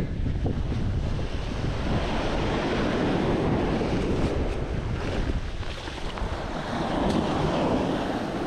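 Sea waves washing in over a sandy shore, with wind rumbling on the microphone.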